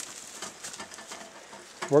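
Faint, steady outdoor background noise with no clear event, then a man's voice starts near the end.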